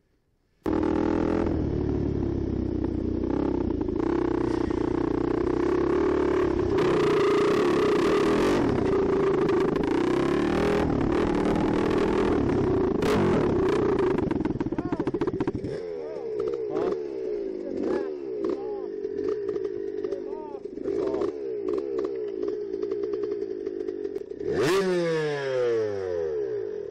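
A Yamaha WR250F four-stroke single-cylinder dirt bike engine running under load while being ridden. It is loud and steady for the first fifteen seconds or so, then eases off into lighter, uneven throttle with a quick rev near the end. Its exhaust is cracked the whole way around and is almost falling off.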